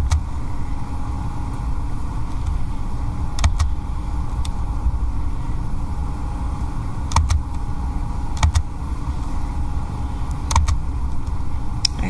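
Steady low room rumble with a handful of sharp computer mouse clicks, a few seconds apart, as report menus are clicked through.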